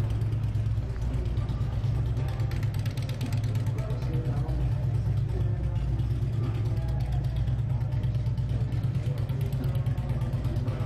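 Street ambience: a steady low rumble of road traffic, with faint voices of people in the background.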